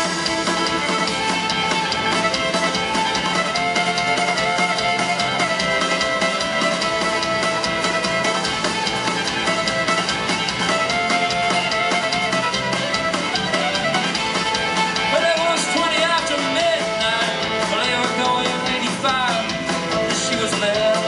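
Live country rock band playing an instrumental passage: a fiddle carries long, wavering lead lines over acoustic guitar, electric guitar, bass and drum kit.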